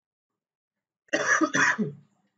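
A person coughing twice in quick succession, starting about a second in.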